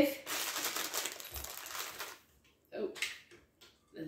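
Plastic bag of cake mix crinkling as it is handled, for about two seconds.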